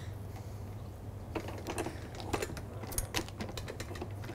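Scattered faint, light clicks and taps from handling steel kitchenware at the stove, over a low steady hum.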